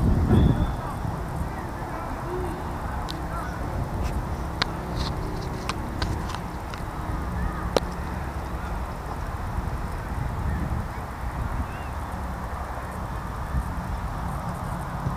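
Wind buffeting an action camera's microphone as it is moved about, with a louder low rumble at the very start and a handful of light clicks in the middle.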